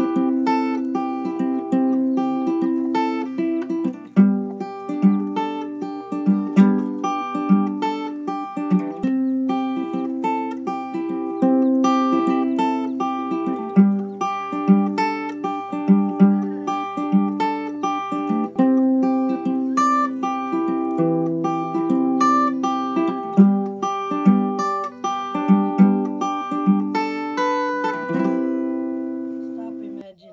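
Background music: a plucked acoustic string instrument picking a gentle melody of distinct notes, fading out near the end.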